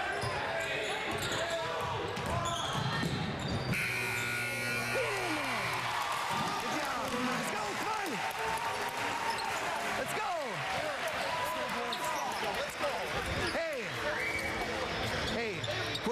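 Gym crowd noise with sneakers squeaking on the hardwood court and a basketball bouncing. About four seconds in, the scoreboard buzzer sounds for about two seconds as the clock runs out on the first quarter.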